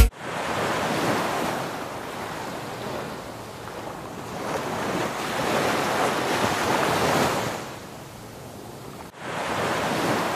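Small waves washing onto the shore, the surf noise swelling and fading, with wind on the microphone. The sound drops out briefly about nine seconds in and then picks up again.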